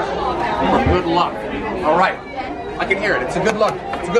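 People talking in the background, voices overlapping in chatter with no single clear speaker.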